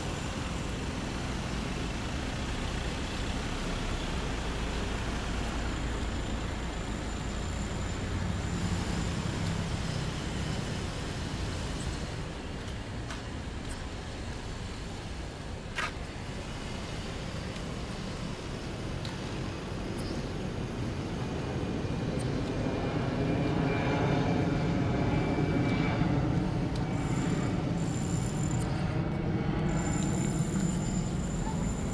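Steady outdoor rumble of road traffic, growing louder over the last several seconds, with a single sharp click about halfway through.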